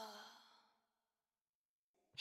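A child's soft sleepy sigh, a breathy voiced exhale that sinks slightly in pitch and fades out within the first second, then near silence.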